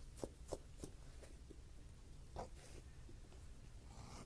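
Hand leather edger shaving the edge of a leather knife sheath: a run of short, faint scraping strokes in the first second and a half, then one longer stroke about two and a half seconds in.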